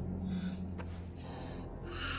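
A person's soft, breathy breaths, two or three short intakes and exhalations, over a low steady hum, with a faint tick about a second in.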